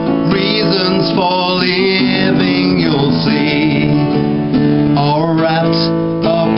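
A man singing a country love song live in several sung phrases, accompanied by his own strummed acoustic guitar.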